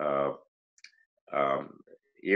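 A man's voice in two short voiced stretches with a pause between them, and a few faint mouth clicks in the pause.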